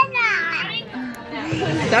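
Speech only: a young child's high voice says a few words, then adult voices come in near the end.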